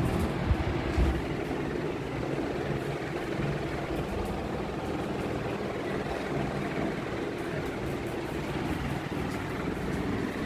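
Steady low hum over a wash of background noise, with a few low bumps in the first second.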